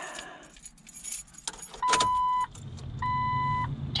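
Keys jangling on the Jeep Wrangler's ignition key as it is turned, then the dashboard warning chime beeping twice, evenly spaced, as the ignition comes on, with a low steady hum starting up.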